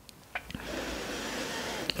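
A person drawing one long, soft breath in, with small mouth clicks before and after it.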